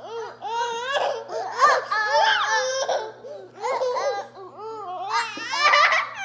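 Toddler laughing and giggling along with an older child's playful voice, with a loud, high squeal of laughter near the end.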